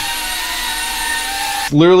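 KingKong ET115 V2 ducted micro quadcopter in flight, its brushless motors and small props giving a steady high whine with several held tones. The whine cuts off suddenly near the end, and a man's voice follows.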